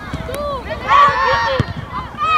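Several voices shouting and calling across a football pitch during play, overlapping, with one loud call about a second in.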